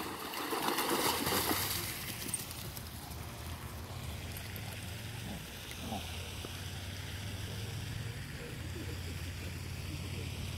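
Dogs wading and splashing through shallow pond water, with sloshing loudest in the first two seconds, then it fades to a steady low rumble.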